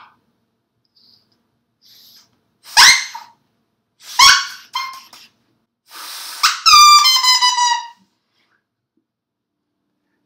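A plastic drinking straw cut to a point and snipped down to a tiny stub, blown as a reed. It gives a few short, high squeaks, then a breathy push and a held squeal of about a second that sags slightly in pitch.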